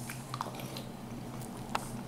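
A person chewing a mouthful of mac and cheese, with a few small faint clicks, over a steady low hum.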